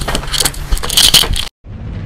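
Irregular jingling and clattering noises for about a second and a half, then a short break and music begins.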